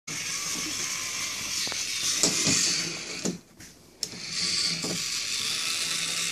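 Small electric motor of a toy train whirring steadily, with scattered plastic clicks and knocks. It stops for about half a second a little past halfway, then starts again suddenly.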